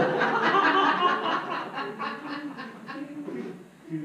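A congregation laughing and chuckling, loudest at first and dying away in short chuckles near the end.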